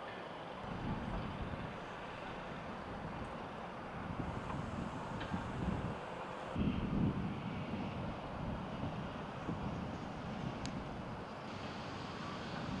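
Wind buffeting an outdoor camera microphone in uneven gusts of low rumble over a steady background hiss, with a couple of faint ticks.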